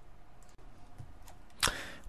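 A pause in a read-aloud narration: faint steady room hiss, then a short breathy burst of noise near the end, just before the voice comes back in.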